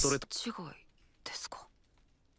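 Soft, whispery speech in short fragments with pauses between, after a louder voice cuts off at the start.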